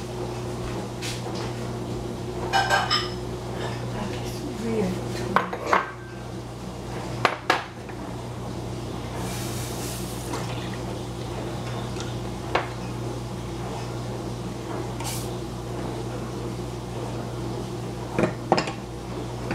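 A stainless steel saucepan and a bowl clink and knock on a gas stovetop as milk is poured from the pan into the bowl. There are a dozen or so separate knocks, a short pouring hiss about halfway through, and a steady low hum underneath.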